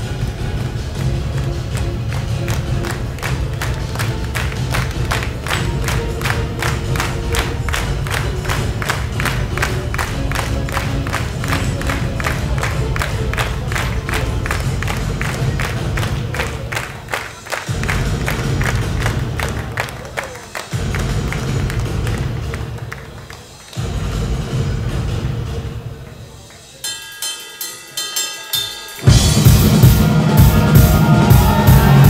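Live progressive metal intro: a steady pulsing beat of about four or five strokes a second over a heavy low end, broken by a few sudden stops. Near the end the full band comes in much louder.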